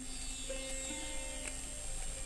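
Quiet background music of a few held notes, with new notes coming in about half a second and a second in.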